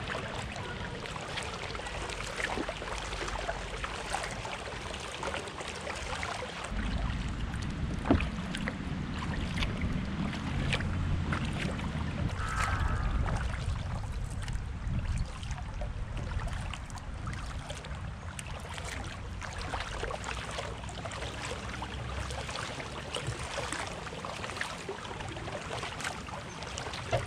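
Kayak paddling: the paddle blade dips and splashes, water drips and laps at the hull, and small clicks and splashes are scattered throughout, with one louder knock about eight seconds in. A low rumble, most likely wind on the microphone, comes in for several seconds in the middle.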